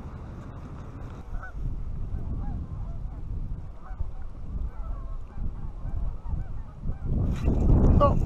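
Wind buffeting the microphone, with faint honking of distant geese scattered throughout. The wind rumble grows stronger near the end.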